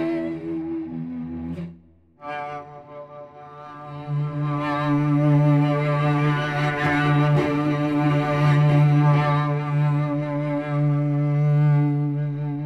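Sampled solo cello from the Cello Untamed library's Storms articulation, held on a single note. One note fades out about two seconds in and a new one begins. From about four seconds in it grows louder and thicker and more angry as the mod wheel stacks calm, lively and wild improvised cello layers on top of each other.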